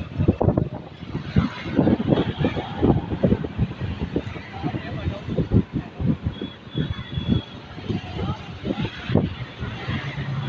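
Wind buffeting the microphone in irregular low gusts, over a steady hum of road traffic.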